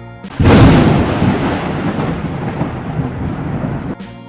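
A thunderclap: a sudden loud crack about half a second in, then a long low rumble that slowly fades and cuts off abruptly at the end.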